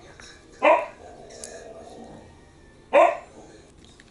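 A dog barks twice, once under a second in and again about two seconds later.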